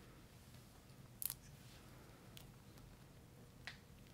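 Near silence with three small, sharp clicks of alligator clip leads and small parts being handled; the loudest, a quick double click, comes about a second in.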